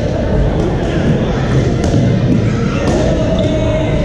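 Badminton rackets striking a shuttlecock in a few sharp, separate hits over a steady hubbub of players' voices and play from other courts, echoing in a large gym hall.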